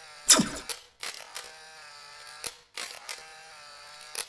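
Logo-animation sound effects: a falling whoosh about a third of a second in, then a few sharp clicks over a faint steady buzz.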